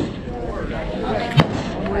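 Faint talking, with one sharp crack about one and a half seconds in.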